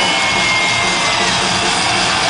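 A heavy metal band playing loud and live through a concert PA, recorded from within the crowd: distorted guitars and drums with no break, and a long held high note through the first part.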